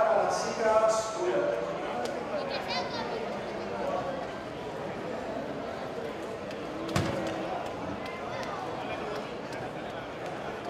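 Indistinct voices talking, clearest in the first second or so, over a steady background hum, with a single sharp knock about seven seconds in.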